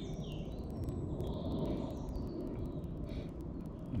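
Outdoor ambience: a steady low rumble with a few faint, short bird chirps scattered through it.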